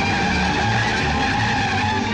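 Cartoon sound effect for a rushing swarm: a loud, steady whooshing hiss with whistling tones that slowly drop in pitch, over low rhythmic notes of the background score.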